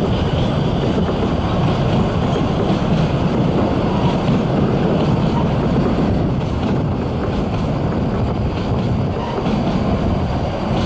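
Coaches of a narrow-gauge train rolling past on the rails, a steady rumble, with heavy wind buffeting the microphone.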